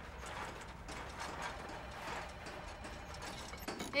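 Wire shopping cart rattling and clattering as it is pushed over rough pavement: an irregular stream of small metal clicks.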